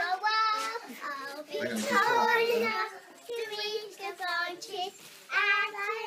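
Young girls singing in high voices, holding several long notes.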